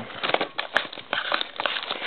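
Handling noise from trading-card boxes being moved about on a table: rustling with a quick, uneven run of small clicks and taps.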